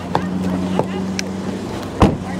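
Car door handle and latch giving a few light clicks as the door is pulled open, over a steady low engine hum.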